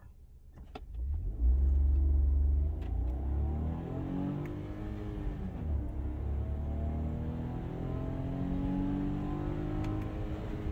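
Smart fortwo's small three-cylinder engine at full throttle from a standstill, heard inside the cabin: a loud low rumble as it pulls away, then the engine note climbing, dropping at an automated upshift about halfway through, and climbing again. It is a full-throttle test of the automated clutch after its actuator fault.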